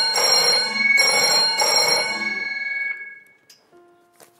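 Old-style telephone bell ringing, a bright trill in repeated bursts that fades out about three seconds in: the signal of an incoming call. A few faint held notes follow near the end.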